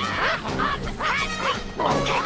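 Baboons shrieking in short, arching calls, several a second, over a continuous music score.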